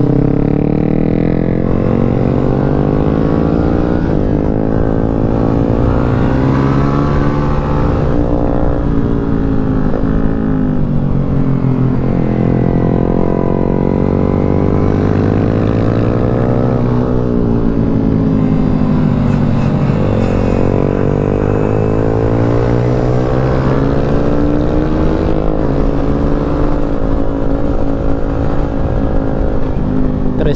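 Yamaha Sniper 155's single-cylinder engine heard from on board at track speed, revs climbing and then dropping sharply again and again through gear changes and corners, with wind rushing over the microphone.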